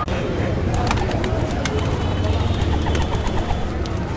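Domestic pigeons in wire cages cooing against the background hubbub of a crowded market, with scattered sharp clicks.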